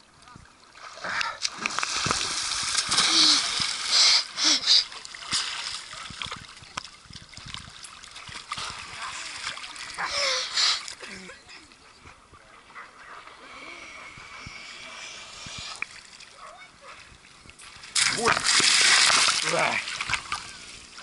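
Lake water splashing and sloshing right at the microphone of a camera held at the water's surface, with loud bursts of splashing about two seconds in, again around ten seconds, and near the end.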